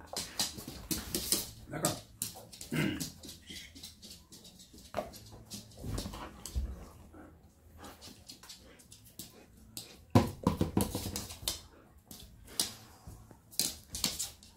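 A dog making short, irregular vocal sounds while playfully mouthing and tussling with a person's hand, amid rustling and clicking of handling on a blanket. The loudest burst comes about ten seconds in.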